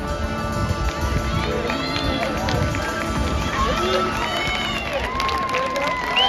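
Stadium crowd voices and shouts mixed with marching band music, with a few held notes coming in about five seconds in.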